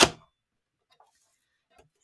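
Paper trimmer blade cutting through a stack of three sheets of patterned paper: one short, sharp swish at the very start that dies away quickly, then near quiet with a couple of faint taps as the cut pieces are handled.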